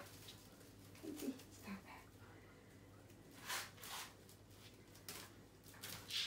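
Mostly quiet room with a few faint, short rustles and scuffs as a puppy shifts about while standing in a fabric-lined dog basket.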